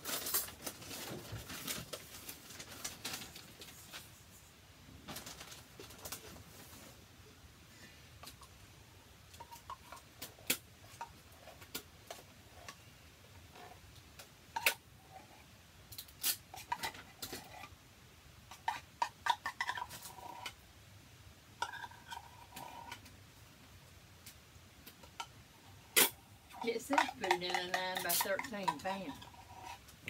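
A metal spoon scraping and clinking against a tin can and a stainless steel mixing bowl as thick sweetened condensed milk is spooned out of the can into the bowl, in scattered irregular clicks and clanks.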